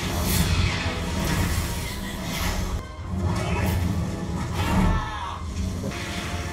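Suspenseful soundtrack music from a fantasy action scene, mixed with whooshing fire effects and a deep boom about five seconds in.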